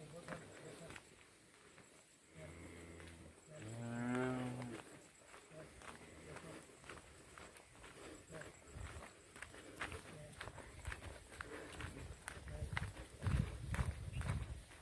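A cow mooing twice, about two seconds in: a short low call, then a louder and longer one. Footsteps sound on a dirt path.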